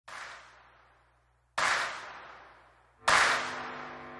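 Three sharp whooshing hits about a second and a half apart, each dying away over about a second; a held musical chord comes in with the third.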